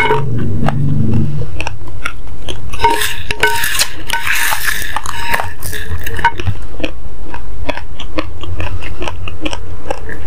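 Raw basmati rice being chewed, with many small sharp crunches of hard grains. In the middle, for a couple of seconds, a denser crackle as a wooden spoon scoops the loose grains on the plate.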